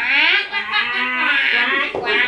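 Several high voices calling out at once in drawn-out, wordless cries with rising and falling pitch, lasting almost two seconds.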